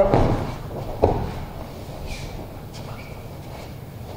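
Aikido breakfall on a padded mat: a thump and brushing as the body lands and rolls, a second sharp thud about a second in, then quieter shuffling of bare feet and uniform as he gets back up.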